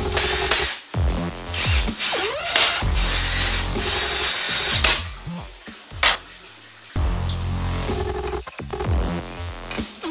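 Background electronic dance music with a heavy beat, over the whirr of a cordless drill during roughly the first five seconds.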